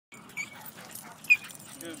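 Dog at play giving two short, high yips, the second one the louder, about half a second and a little over a second in.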